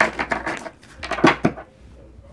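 A deck of oracle cards being shuffled and handled by hand: a few short scraping rustles in the first second and a half.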